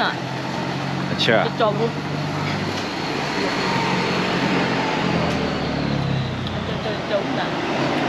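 A motor vehicle's engine running steadily with road noise. The noise swells and then fades in the middle.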